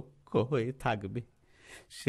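A voice speaking a short phrase in Bengali, then an audible sharp intake of breath near the end.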